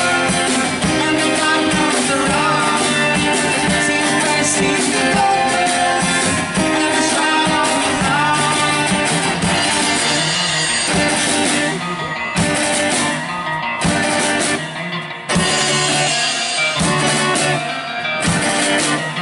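Live rock band playing: two guitars over a drum kit with cymbals. The band makes a few short breaks in the second half.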